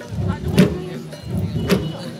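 Massed long drums beaten together in a steady dance rhythm: a dense rolling low beat, with a sharp accented stroke about once a second.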